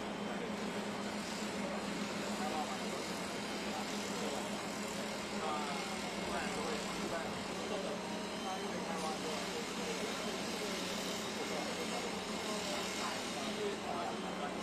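Heavy construction machinery, a concrete mixer truck and an excavator, running steadily: a constant low engine hum under a steady mechanical noise.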